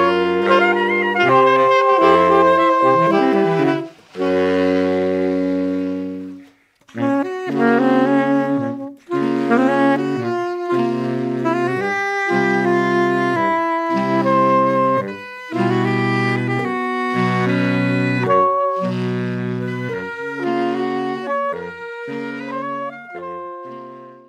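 Saxophone quartet (soprano, alto, tenor and baritone) playing a chordal passage of held and short notes together, with a few brief breaks, fading out near the end.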